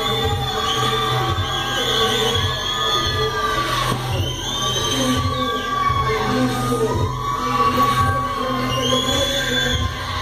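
Hip hop dance routine music with a heavy steady beat, with a crowd cheering and shouting over it, heard through a computer's speakers.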